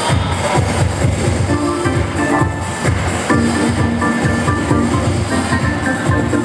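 Electric keyboard playing a funk instrumental over a steady bass-and-drum beat, with held chords and short melody notes on top.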